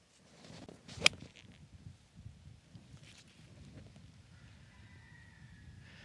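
A golf iron swishes down in a half swing and strikes a golf ball off the fairway turf with one sharp, crisp click about a second in: a clean strike.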